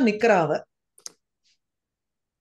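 A single short computer-mouse click about a second in, with a fainter tick just after.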